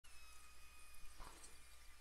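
Very quiet room tone with a faint steady high tone, and one soft brief sound a little over a second in.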